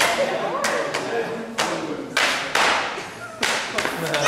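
Jiu-jitsu belts lashing a bare back in a promotion gauntlet: a string of sharp smacks, several in four seconds at uneven intervals, with voices of the people lining the walk.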